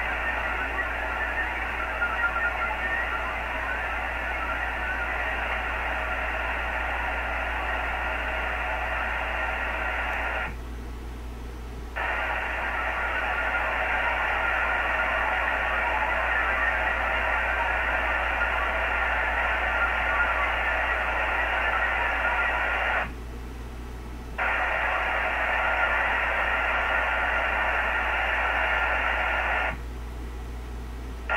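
VARA HF modem data signal from a ham radio receiver during a Winlink message transfer: a dense hissing band of tones in long bursts of several seconds, broken twice by a gap of a second or so and stopping again near the end, over a steady low hum.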